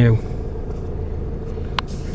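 Ford Fiesta 1.4 diesel's four-cylinder engine idling, a steady low rumble heard from inside the cabin, with a single sharp click near the end.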